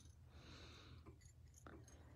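Near silence: faint rustling of a cotton fabric box bag being shaped by hand, with a light tick about one and a half seconds in.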